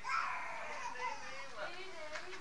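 A toddler's high-pitched voice: one long call that falls in pitch, then a lower, shorter sound near the end.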